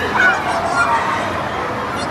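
A young child's playful squeals and babble over the steady chatter of a crowded food court.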